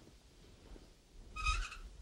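Quiet room tone, then about one and a half seconds in a short, high squeak with a dull low thump, from a presentation chart board being handled on its easel.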